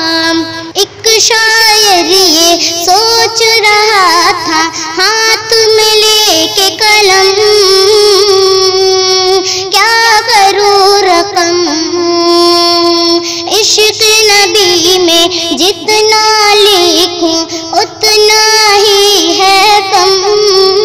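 Naat sung by a single high, child-like voice: long held notes that slide and waver in pitch, sung with no clear words between verses.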